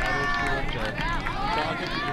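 A man's voice speaking, over a steady, busy background of many short, overlapping gliding sounds.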